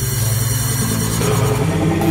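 Electronic music: a dark, low synth drone over a steady fast low pulse, with the bass pattern changing and a new higher layer coming in near the end.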